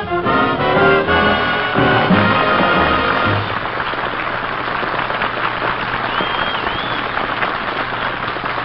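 A swing orchestra with brass plays the closing chords of a song, and a studio audience applauds from about three seconds in to the end.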